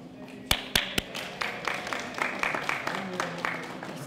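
Audience clapping, starting about half a second in with a few loud, close claps, then steady applause.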